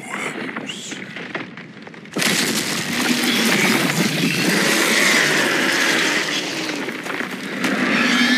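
Film sound effects of crumbling, breaking rock: a quieter stretch, then a sudden loud crash about two seconds in that carries on as dense, steady noise of rock and rubble giving way.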